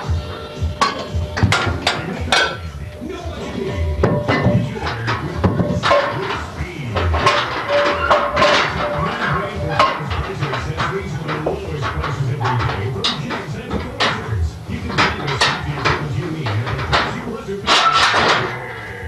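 Iron weight plates clanking and knocking against a steel barbell as they are loaded onto it and the bar is handled in the rack, in repeated sharp clanks, with music and indistinct voices underneath.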